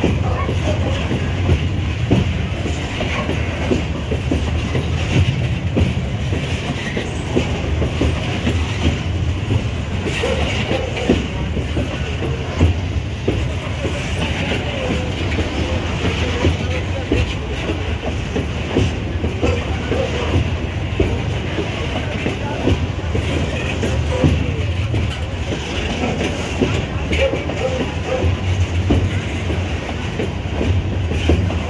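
Empty steel iron-ore gondola wagons of a long freight train rolling past at close range. A steady rumble runs throughout, with many sharp knocks and rattles as the wheels clatter over the rail joints.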